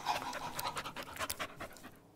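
A woman imitating a dog panting with her own breath: rapid breathy pants, about six or seven a second, which stop just before the end.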